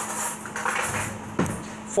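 Metal cutlery jingling and clattering as a fork is picked out from among the others, with a sharper knock near the end.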